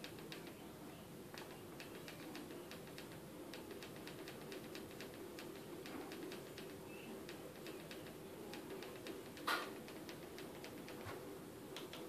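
Faint, irregular clicking of remote-control buttons being pressed again and again, over a low steady hum, with one louder click about nine and a half seconds in.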